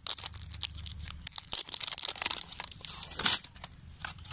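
Clear plastic wrapping being torn and peeled off a plastic shampoo bottle: a dense run of crinkling crackles, with one loud rip a little after three seconds in.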